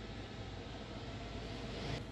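Steady, faint background hiss of room tone, with no distinct event.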